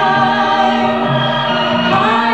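Voices singing a slow Christian song, holding a long sustained chord over a sustained accompaniment.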